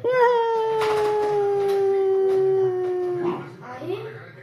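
A toddler's play-acted cry: one long vocal note held for about three seconds, slowly falling in pitch, then breaking off.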